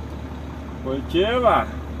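Truck's diesel engine idling, a steady low hum heard from inside the cab, with a short spoken "Oi" about a second in.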